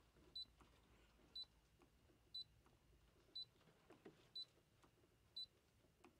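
Short, high electronic beeps from a Brother ScanNCut cutting machine's touch panel, six of them evenly spaced about a second apart, as unwanted design pieces are deleted with the trash button.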